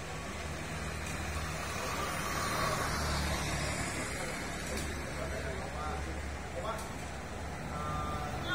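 Street ambience: a steady low motor-vehicle engine rumble that swells about three seconds in as traffic passes, with background chatter from people nearby.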